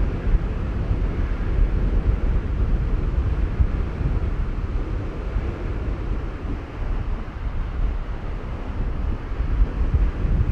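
Strong wind, about 25 knots, buffeting the microphone: a heavy low rumble that rises and falls with the gusts, with surf washing underneath.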